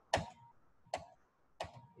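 Three computer mouse clicks, each short and sharp, spaced a little under a second apart.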